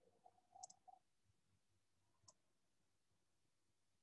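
Near silence with a few faint computer-mouse clicks: a cluster in the first second and a single click a little past two seconds in.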